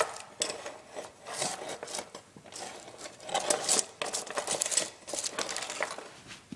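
Steel traps and their chains clinking and rattling against a wooden float board as they are handled and set, with scattered clicks and some rustling.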